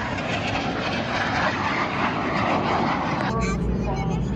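Jet noise from two jet aircraft flying past, a loud steady rush that cuts off suddenly about three seconds in, giving way to a low rumble.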